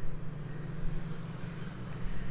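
Steady low hum with a faint even hiss: background noise of the recording.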